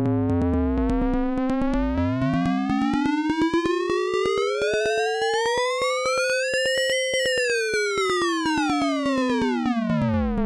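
Roland TR-6S FM open-hat voice repeating rapidly with a long decay, so the hits run together into one sustained, many-overtoned synth tone. Its pitch is swept up by the tuning control, peaking about seven seconds in, then back down.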